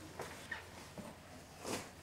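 Faint rustling and soft knocks of denim jeans and a cardboard box being handled, with a brief swish a little before the end.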